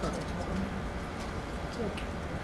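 Faint, indistinct voices over a steady low hum of room noise.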